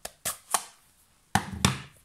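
Handling of a plastic-cased stamp ink pad on a desk: a few light plastic clicks, then two louder knocks about a second and a half in as the pad is set down.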